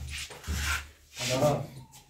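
Brief rubbing and rustling noises in two short bursts in the first second, followed by a man's short spoken word.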